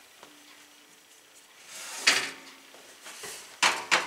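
Quiet kitchen, then a brief rustle about halfway and a quick run of sharp knocks near the end, from pies and the oven being handled.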